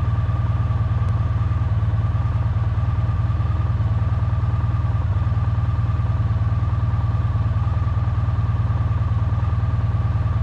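Motorcycle engine idling steadily with the bike at a standstill.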